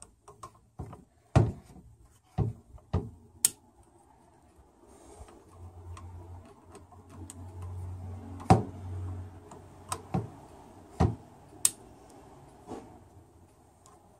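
Small torque wrench and socket tightening bolts on the plastic solenoid lead frame of a ZF 6HP26 transmission: a series of sharp, irregularly spaced clicks, about ten in all.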